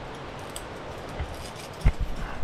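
A few light clinks of climbing gear over a low outdoor hiss, then a loud knock near the end as a hand grips the helmet camera.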